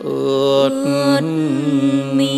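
Live bolero band playing sustained instrumental notes between sung lines, with strings and wind instruments over a steady low chord and a wavering melody line in the middle.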